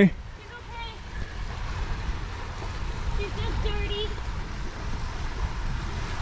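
Wind rumbling on the microphone outdoors, with faint distant voices.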